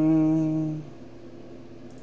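A man humming one flat, held note for about a second, then only a low, steady background hum.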